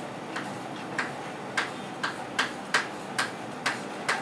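Chalk striking and stroking a chalkboard while a word is written: a string of short, sharp clicks, about two a second at an irregular spacing.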